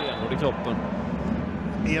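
Male commentator's voice speaking briefly at the start and again near the end, over a steady low rumble of indoor arena background noise.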